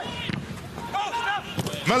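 Soccer match broadcast audio: low pitch-side ambience with a few brief voice fragments, then near the end a man's voice rises sharply as the commentator begins his goal call.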